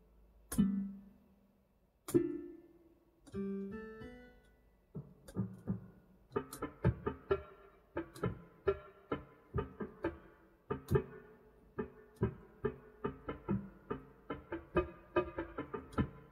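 Digital piano played by hand: a few separate chords, each left to ring, then from about five seconds in a quicker, even run of notes.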